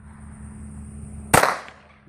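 A single handgun shot about a second and a half in: one sharp crack with a short ringing tail.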